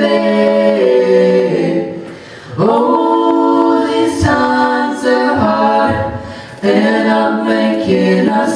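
Live band singing sustained vocal harmonies, a female lead with male voices, over guitars: long held phrases, each broken by a short dip before the next chord comes in.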